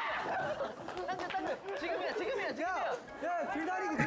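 A group of young men shouting and yelling over one another during a game, with background music under them.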